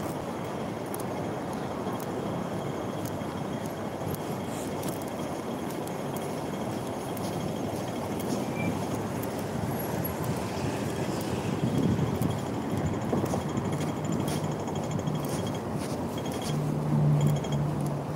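Steady city traffic noise, a continuous rumble and hiss, with a low humming tone that comes and goes near the end.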